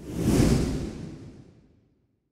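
A transition whoosh sound effect: it swells over the first half second, a deep rumble under a hiss, then fades away over about a second and a half.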